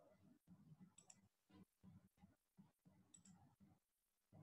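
Near silence: faint room sound with scattered soft clicks, two of them sharper, about one second in and about three seconds in.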